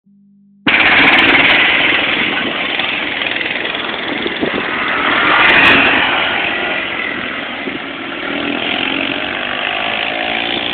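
ATV (four-wheeler) engines revving hard as the quads spin on loose dirt, cutting in suddenly about a second in. The sound is loudest about halfway through as one quad passes close, with the engine pitch climbing again near the end.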